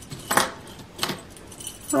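Gold-tone metal keychains with enamel bunny charms and clasps clinking together as they are handled: two distinct jingles, about a third of a second and a second in, with fainter ticks between.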